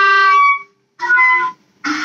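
Clarinet playing: a held note fades out about half a second in, a short note follows after a brief pause, then after another short gap a new note starts near the end.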